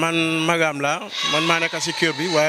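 A man's voice in three drawn-out phrases with long held, wavering tones.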